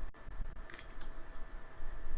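A couple of faint, short clicks, about a third of a second apart, over low steady room hum.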